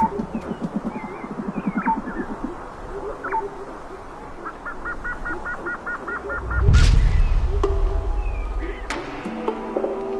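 Birds calling outdoors: a fast, pulsing low call at first, then a quick run of repeated high chirps. A low rumble follows, and music comes in near the end.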